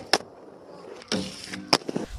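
Quad roller skate wheels rolling over skatepark ramp and concrete. Two sharp clacks of the skates hitting the surface come at the start, a louder rush of rolling follows just after a second in, and one more clack comes near the end.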